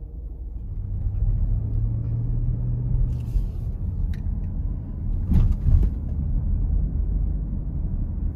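Inside a moving car: low engine and road rumble that grows about a second in as the car gets under way, with a brief louder burst of noise about five and a half seconds in.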